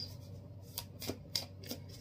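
A deck of tarot cards being shuffled by hand: a quiet run of short, irregular card taps and flicks.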